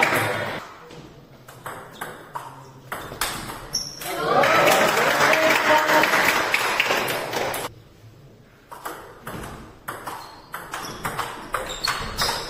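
Table tennis ball clicking off bats and table. There is a run of bounces and strokes in the first few seconds, then a stretch of voices, then a rally of quick strokes from about nine seconds in.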